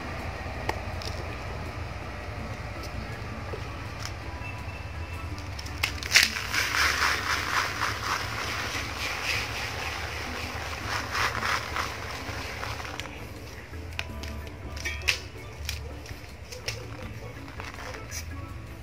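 Soil being sifted through a plastic mesh basket onto a seedling tray: a gritty rustling made of many short shakes, loudest from about six to twelve seconds in. Faint background music plays under it.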